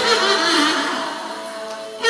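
Amplified woman's voice singing into a microphone over a recorded backing track, growing quieter through the second half.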